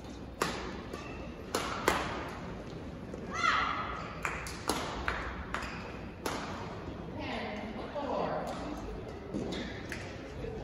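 Sharp taps and knocks at irregular intervals, about ten of them, echoing in a large hall, with people talking in the background.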